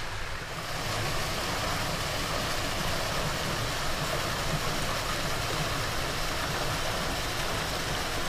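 Steady splashing rush of water spilling from spouts in a pool's stone wall into a swimming pool, a little louder about half a second in.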